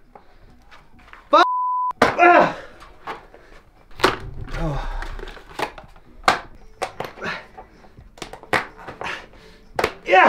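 A short steady censor bleep about a second and a half in, with the sound around it cut out, followed by a brief voiced exclamation. After that comes a scatter of sharp knocks and clicks from parts and tools being handled on a workbench and floor.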